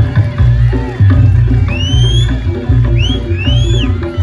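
Reog Ponorogo gamelan accompaniment: drums and gongs beat out a steady, driving repeating rhythm, with high sliding notes rising and falling over it about halfway through and again near the end.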